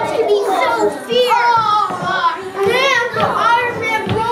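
Several children shouting and yelling over one another, with high-pitched shrieks that rise and fall about a second in and again around three seconds in.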